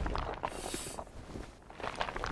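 Small bits of broken floor and plaster trickling and clattering down after a crash-through: scattered light ticks, with a brief hiss about half a second in.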